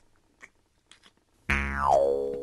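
A few faint clicks, then about a second and a half in a loud cartoon sound effect: a thud with a falling pitched boing that slides down and fades.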